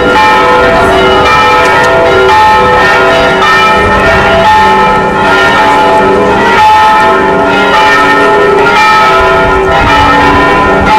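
Church bells ringing, many bells at different pitches sounding over one another in a continuous peal.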